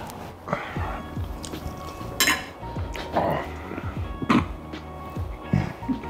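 Cutlery clinking against a ceramic plate, with two sharper clinks about two and four seconds in, over quiet background music.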